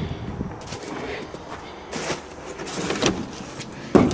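A house's side door being opened and passed through: scraping and knocking noises, with a sharp knock at the start and another just before the end.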